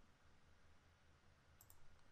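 Near silence, with a few faint clicks near the end, as a computer mouse selects an item from a drop-down list.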